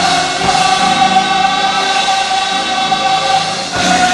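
Gospel choir singing, holding one long chord that shifts to a new chord near the end.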